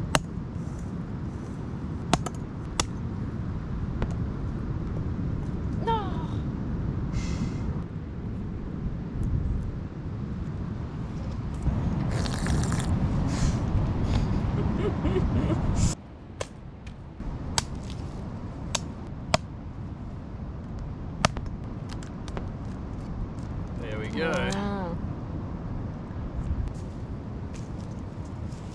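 Sharp knocks of a machete chopping into a husked coconut, scattered over a steady low rumble. A brief voice is heard near the end.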